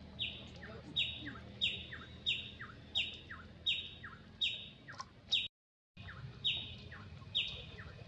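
A bird calling over and over, each call a short whistle dropping in pitch, about one and a half calls a second. The sound cuts out completely for half a second just past the middle.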